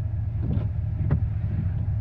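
Steady low rumble of a car's idling engine, heard from inside the cabin.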